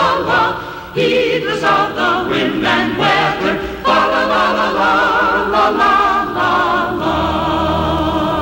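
A choir singing a Christmas song, the voices moving through held phrases with a short break between each.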